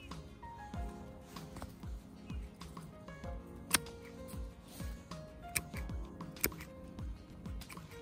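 Background music with a steady beat, over which come a few sharp clicks. The loudest comes a little under four seconds in, with two more near the end: the snips of hand-held bypass secateurs cutting thin woody hydrangea stems.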